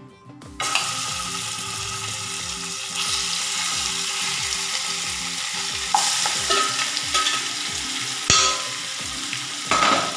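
Marinated chicken pieces sizzling as they drop into hot oil in a kadai. The frying starts abruptly under a second in and gets a little louder about three seconds in, with a few sharp knocks in the second half.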